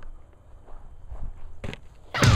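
Footsteps on grass picked up by a helmet-mounted camcorder's microphone, with a sharper knock near the end.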